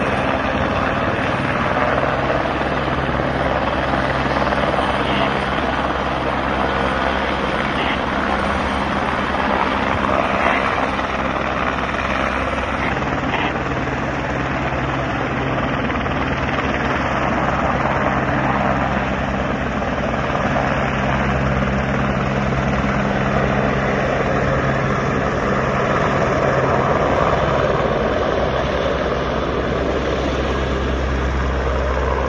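Helicopter hovering low with its rotor and turbine running steadily while its underslung firefighting water bucket is filled and lifted.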